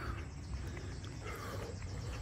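A man breathing hard through his nose close to a phone microphone, with two soft exhales, the second a little over a second in. A low rumble of wind and handling on the microphone runs underneath.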